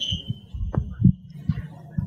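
Handling noise from a handheld microphone as it is passed to an audience member: a series of dull low thumps and knocks, with a faint thin high tone that stops after about a second and a half.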